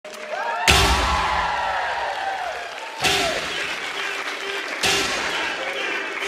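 Live band playing three big accented hits, about one, three and five seconds in, each with a crash ringing out and a low bass thud, over shouting and cheering voices.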